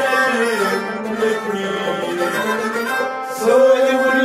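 Kashmiri Sufi devotional music: a harmonium holding steady chords, joined by bowed and plucked string instruments, with singing.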